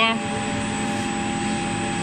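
MO-002 CNC metal milling machine running its test run-in: a steady mechanical hum with several fixed whining tones, one of them high-pitched.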